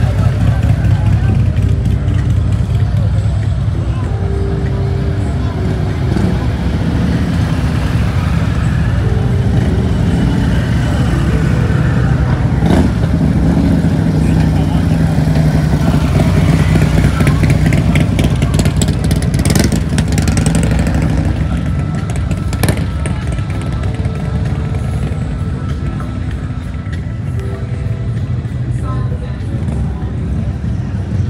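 Motorcycle engines rumbling as bikes ride slowly past, a steady low rumble that eases a little near the end, over crowd voices and background music.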